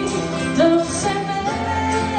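Live acoustic band playing a country-rock song on acoustic guitars and mandolin, with a held melody line gliding from note to note.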